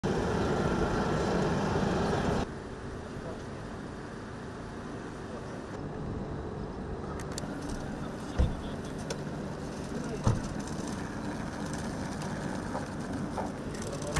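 Jet airliner taxiing on the apron, a steady rumble that cuts off after about two and a half seconds. Then quieter outdoor ambience with faint voices, scattered camera-shutter clicks and two dull thumps.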